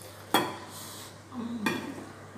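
Two sharp clinks of stainless-steel tableware on a table, about a second and a half apart, each with a short ring.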